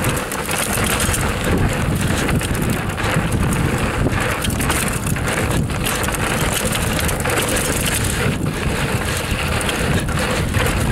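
Raleigh Tekoa 29er hardtail mountain bike descending a dirt singletrack: constant wind rush on the microphone and tyre noise on dirt, with frequent knocks and rattles over bumps.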